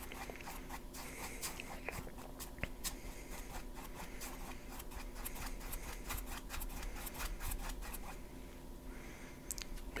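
Paintbrush stroking acrylic paint onto a stretched canvas: faint, irregular scratchy brushing sounds, with a low steady hum underneath.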